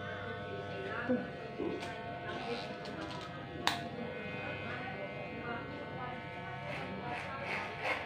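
Cordless electric hair clipper with a number-one guard buzzing steadily as it cuts short hair up the side of the head. A single sharp click comes a little past halfway.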